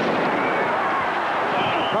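Large stadium crowd cheering through a running play, a loud, dense mass of many voices. A high, steady whistle comes in near the end, the play being blown dead after the tackle.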